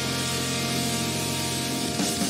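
Live hard-rock band recording playing: a sustained, ringing chord held under a steady hiss.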